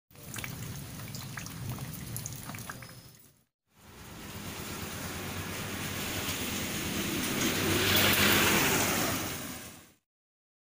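Rain falling on wet ground and a puddle, with scattered drip ticks for the first three seconds. After a brief break, a steadier rain sound swells to its loudest about eight seconds in, then fades out.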